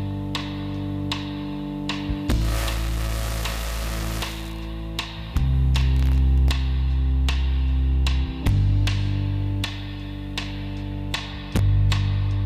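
Instrumental pop music with a steady beat and bass notes that change every few seconds, received off the air from an unlicensed FM pirate station on 87.9 MHz and demodulated by a software-defined radio.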